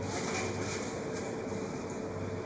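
Steady background hiss with a faint low hum throughout, and no distinct knocks or press strokes.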